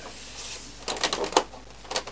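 Sharp plastic clicks and taps as a table knife wedged behind the side cover of an Epson R265 printer is pressed against the clip that holds the cover on, after a soft rustle of handling. The clicks come in a quick cluster a second in, with one more near the end.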